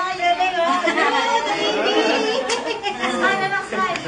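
Several people talking over one another: continuous overlapping chatter.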